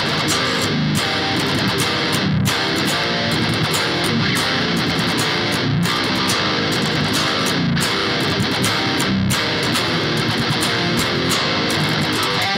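Distorted electric guitar riff played through a Neural DSP Nano Cortex rhythm tone, over a backing track of drums and bass, running steadily throughout.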